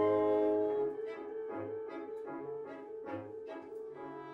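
Small chamber ensemble of violin, piano and winds playing: a loud held chord breaks off about a second in, giving way to a quieter passage of short repeated notes over a low bass line.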